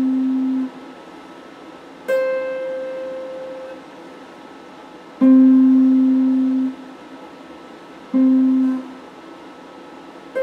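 Electric guitar played with a clean tone: single notes picked one at a time, about three seconds apart, each ringing for a second or so before it is stopped. A note held at the start is cut off just under a second in; the next note is higher, and the last two are an octave lower.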